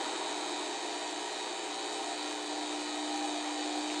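Steady background noise: an even hiss with a faint constant hum, unchanging throughout.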